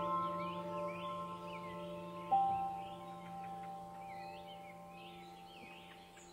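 Ambient background music: bell-like notes ringing on and slowly fading, with a new note struck about two seconds in, over faint chirps.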